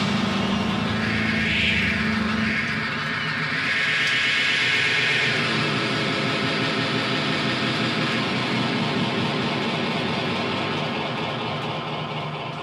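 A rock song has just ended and the amplifiers hang on in a steady low drone. A wash of crowd noise fills the first few seconds, then the sound slowly dies down.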